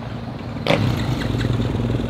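Dirt bike engine idling steadily, cutting in suddenly about two-thirds of a second in.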